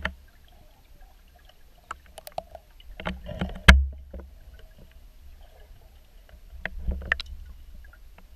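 Underwater sound picked up by a GoPro in its housing: a low water rumble with scattered clicks and knocks. A cluster of knocks ends in one heavy thump about three and a half seconds in, and another group of clicks comes near the end.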